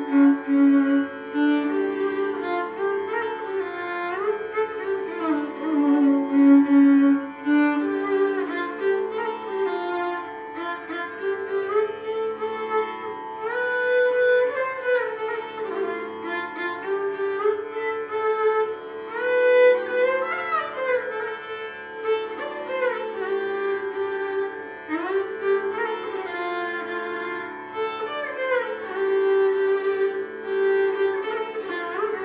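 Solo violin played with the bow: a slow melody with frequent sliding glides between notes, over a steady low sustained tone.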